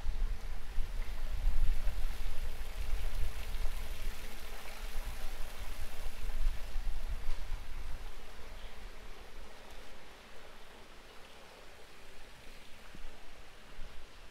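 Outdoor street ambience with gusty wind rumbling on the microphone over a steady hiss; the rumble eases off about eight seconds in.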